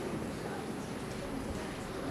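Light, scattered clapping from an audience in a hall, with a low murmur of voices.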